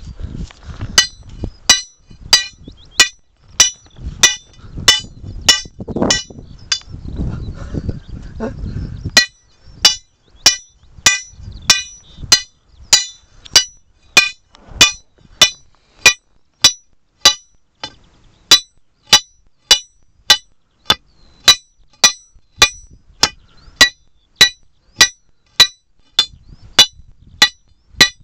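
Lump hammer striking the head of a steel hand-drill rod, steel on steel, in a steady rhythm of about three blows every two seconds, each blow a sharp clink with a brief ring. Traditional Cornish two-man hand drilling, boring a hole into rock.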